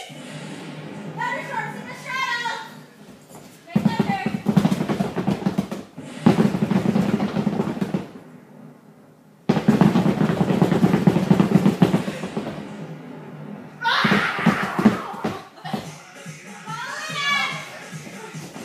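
Rapid drumming like a drum roll, in four bursts of one to three seconds each, with voices between them.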